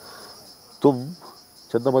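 Steady, high-pitched chorus of insects, unbroken behind a man's voice, who says a word about a second in and starts talking again near the end.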